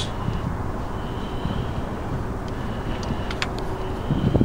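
Steady low rumble with a couple of faint clicks, about two and a half and three and a half seconds in, as the exhaust nuts on a Honda PCX125 scooter's manifold studs are turned off by hand.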